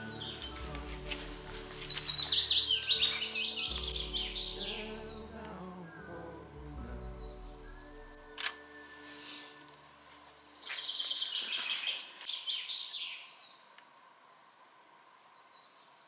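Songbirds singing, a descending run of notes near the start and another burst of song a few seconds before the end, over soft background music that fades out about halfway. A single sharp click a little past halfway: a camera shutter.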